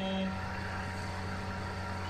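A man's held sung note ends about a quarter second in, leaving only a steady low hum and hiss with no voice or accompaniment.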